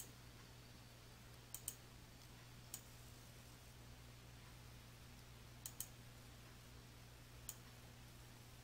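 Computer mouse buttons clicking, about seven faint sharp clicks spread out, twice in quick pairs, over a faint steady low hum.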